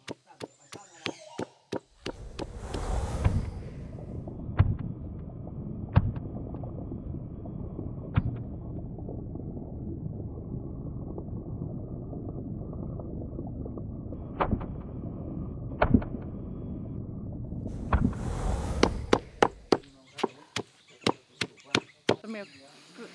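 Stone pestle pounding chilies, black pepper and garlic in a stone mortar for curry paste. Quick sharp knocks at the start and again near the end; in between, a muffled low rumble broken by a heavier strike every second or two.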